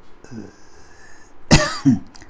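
A man coughing once, a short throat-clearing cough about one and a half seconds in.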